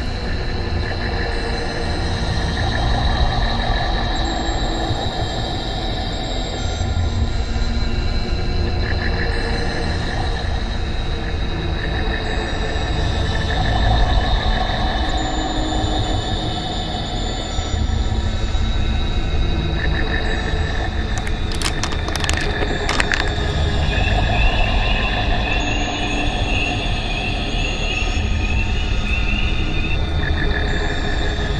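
Droning film score: sustained high tones over a steady low rumble, with a couple of sharp hits about three-quarters of the way through and a warbling high tone near the end.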